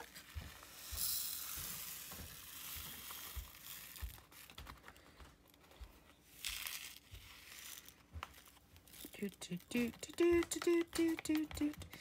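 Diamond painting AB resin drills poured from a plastic baggie into a small clear plastic storage pot: a soft, steady pouring hiss for about three seconds, then a second short pour a little later, with crinkling of the bag and light plastic knocks. A voice comes in near the end.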